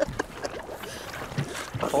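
Water sloshing and splashing around scuba divers in the water at the surface, with irregular small splashes.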